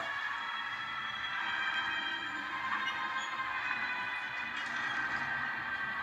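Film soundtrack playing quietly through laptop speakers, heard in the room: a low steady sound with faint sustained high tones and no speech.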